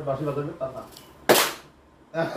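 A few words of men's speech, then about a second and a quarter in one loud, sharp smack of hands striking together.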